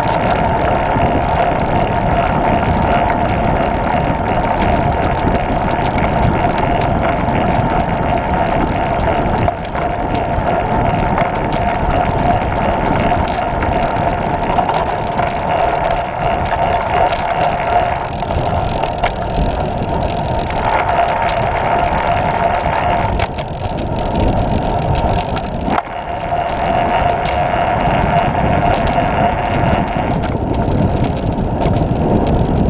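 Wind noise on the camera microphone and the rolling noise of a Catrike 700 recumbent trike at about 21 mph on pavement: a steady rush with a hum, easing briefly twice in the second half.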